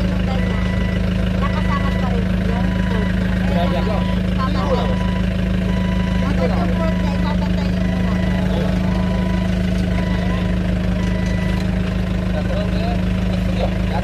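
Clark forklift's engine idling steadily with a constant low hum, while a beeper sounds on and off in short tones.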